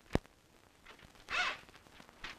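A single sharp click just after the start, then a short rasping sound about a second later.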